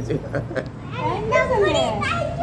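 Children's voices: chatter, then high-pitched calls that rise and fall in pitch from about a second in.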